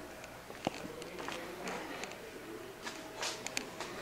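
A few light clicks and knocks over quiet room noise, one sharp click about a second in and a quick cluster near the end.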